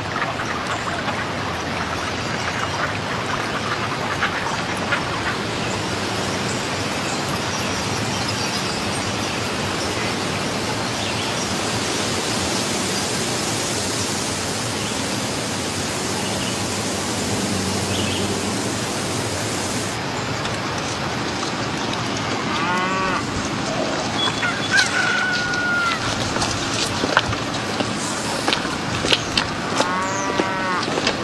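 A steady rushing outdoor ambience fills the first two-thirds. From about two-thirds of the way in, farm fowl call several times in short runs, with scattered clicks.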